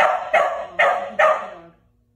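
A dog barking four times in quick succession, about two barks a second, then stopping.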